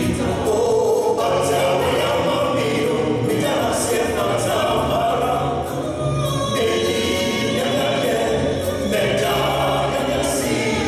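A gospel vocal group singing together into microphones.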